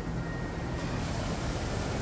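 Steady low machinery hum of the workshop's background noise, with a hiss joining about a second in.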